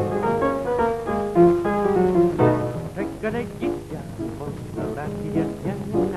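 Swing-style jazz piano playing a lively tune with a double bass underneath. About halfway through, the notes turn shorter and more clipped.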